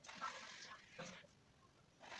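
Near silence: faint room sounds that die away a little past a second in.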